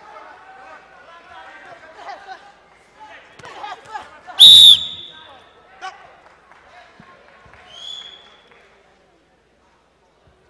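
Boxing ring bell sounding once about four seconds in, loud and ringing for about half a second: the signal for the end of the round. Voices and shouting from the arena run underneath before it, and a shorter, quieter high tone sounds near the end.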